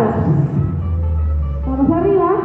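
Background music, with a long low bass note held through the middle.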